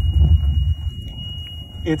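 Low rumbling noise on an outdoor microphone, strongest in the first second and then easing, under a steady high-pitched electronic tone; a voice starts right at the end.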